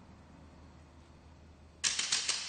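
Faint low hum, then near the end a sudden bright percussive crash with three quick strikes that ring on and slowly die away, opening a piece of music.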